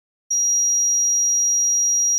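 A steady, high-pitched electronic beep tone held for over two seconds, starting and stopping abruptly, with a single sharp click near its end.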